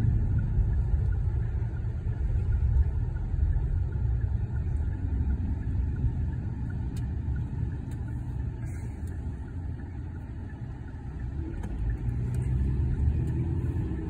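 Car cabin noise while driving: a steady low rumble of engine and tyres on the road. It eases off about ten seconds in, then rises again.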